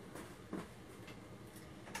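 Faint handling sounds at a desktop computer tower as cables at its back are felt for: two soft clicks or knocks, one about half a second in and one near the end, over quiet room tone.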